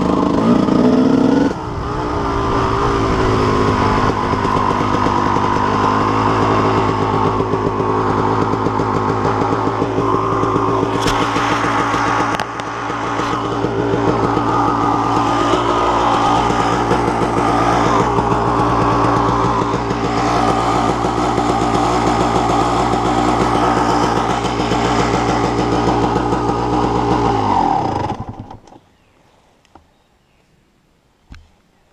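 Yamaha YZ250 two-stroke single-cylinder dirt bike engine running at a steady pitch while riding. About 28 seconds in the engine is cut off, its pitch falling as it winds down to a stop.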